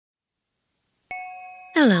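A single bell-like chime struck about a second in after silence, its several tones ringing and fading before a voice begins.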